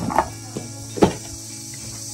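Plastic tableware knocking as the lid of an insulated plastic casserole is lifted off: a light click just after the start and a sharper knock about a second in. Soft steady music runs underneath.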